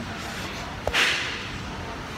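Phone handled and swung while filming: a small knock, then a short swish just after it about a second in, over steady room noise.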